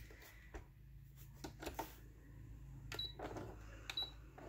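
A few faint, scattered clicks and light handling sounds as paper is set under a sewing machine's presser foot, over a faint steady low hum.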